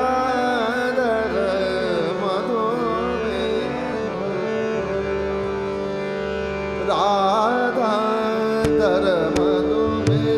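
Male Hindustani vocalist singing a Marathi natyageet in ornamented, sliding melodic phrases over a tanpura drone, with a harmonium following the melody. The voice drops out about four seconds in, leaving the harmonium and drone held, and comes back about seven seconds in. Tabla strokes enter near the end.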